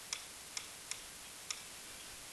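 Faint taps of a stylus on a Promethean interactive board while numbers are being handwritten: four light clicks, irregularly spaced about half a second apart, over a low hiss.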